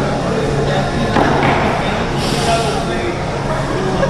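Background voices and music, with a short hiss of forced breath about two seconds in as a lifter strains through a chest press rep on a plate-loaded machine.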